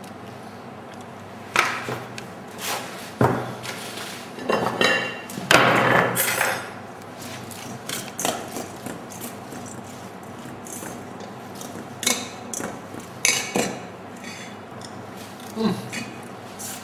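Kitchen clatter of utensils and dishware knocking and clinking at irregular moments, with a denser run of knocks and rattling about four to six seconds in, while dressing is poured and the salad is prepared.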